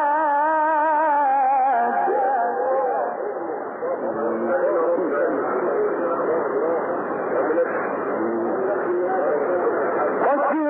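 A Quran reciter's voice holds a long, ornamented note with a wavering vibrato for about two seconds. It then gives way to many listeners calling out at once in overlapping exclamations of approval, which last to the end.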